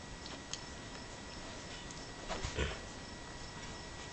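Two-week-old Brittany puppies nursing and squirming against their mother, with faint scattered small clicks. A brief, louder muffled bump comes about halfway through.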